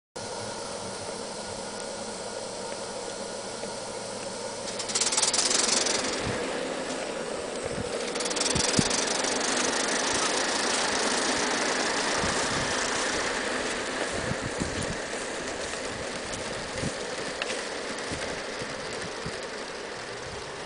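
Live-steam garden-scale Aristo-Craft Mikado locomotive running with a steady hiss of steam and a light rattle. The hiss swells for about a second around five seconds in and again from about eight seconds, with a few low thumps.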